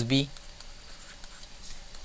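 Faint, irregular scratching and light ticks of a stylus writing on a drawing tablet.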